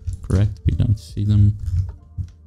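A man's voice talking in short phrases the words of which are not made out, with computer keyboard keys tapping under it.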